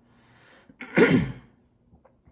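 A woman's single short, loud vocal burst about a second in, not speech, after a faint breath in.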